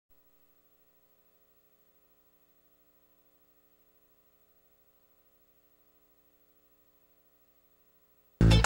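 Near silence: only a faint, steady electrical hum made of several fixed tones.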